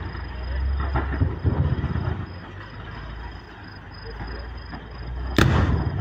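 A single loud, sharp explosion about five seconds in, ringing out briefly: a demolition charge set off to represent a minefield. Beneath it runs a low rumble, with faint thuds about a second in.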